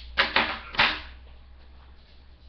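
Three sharp clicks and knocks in quick succession, each with a short ringing tail, from makeup items and tools being handled and set down.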